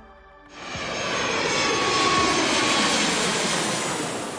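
Sound effect of a jet airplane passing overhead: a steady rushing engine noise that swells in about half a second in and holds.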